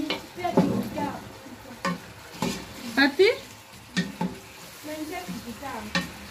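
Wooden spoon stirring chicken pieces in a metal pot, with irregular scrapes and knocks against the pot, over the sizzle of the meat frying.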